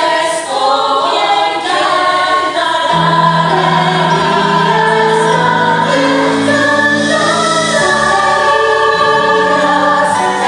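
A musical-theatre cast singing together in harmony, in long held notes. A lower part comes in about three seconds in.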